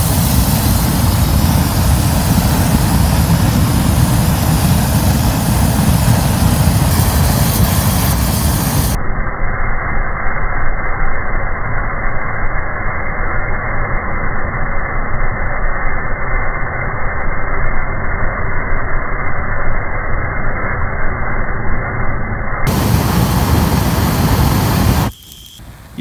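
A flamethrower running with a loud, steady rush of flame. The sound turns muffled for a long stretch in the middle, then cuts off suddenly about a second before the end.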